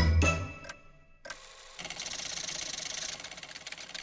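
Cartoon score with bell chimes cuts off about half a second in. After a brief pause a clockwork mechanism whirs and rattles quickly, loudest for about a second in the middle, as the tower clock's striking figure is set in motion.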